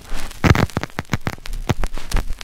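Glitch-style static sound effect: irregular crackles and clicks over a low electrical hum.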